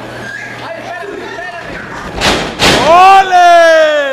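Two heavy thuds about half a second apart, a wrestler's body hitting the wooden ring boards through the canvas, followed by a long, loud yell from a man in the crowd that falls in pitch.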